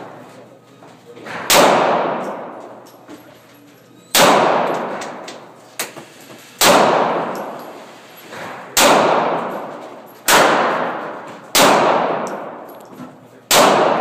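Revolver fired one shot at a time inside an indoor shooting range: seven loud shots about two to three seconds apart, each ringing out in a long echo off the range walls.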